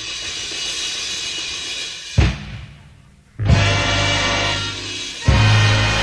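High school jazz big band playing live. A sustained passage gives way to loud accented ensemble hits backed by drums about two, three and a half and five seconds in, with a brief drop in sound just before the second hit.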